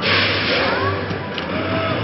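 Arcade ambience: game-machine music and electronic effects playing over a pulsing low beat, with a short rush of noise right at the start.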